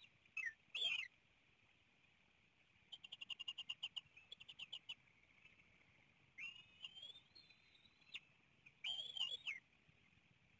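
Bald eagles at the nest calling in high, thin whistles. There are two short gliding calls near the start, a rapid chittering series of short high notes about three seconds in, and longer drawn-out whining calls near the end, all over a steady faint high hiss.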